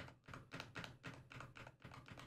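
Faint, quick computer keyboard key presses, about six a second, as a key is tapped repeatedly to step a highlight row by row up a menu.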